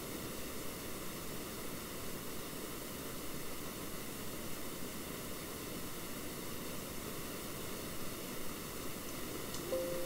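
Steady background hiss from the recording microphone, with no distinct sound events.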